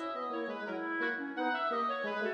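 Background music: a melody of held instrumental notes changing pitch every half second or so, with no voice.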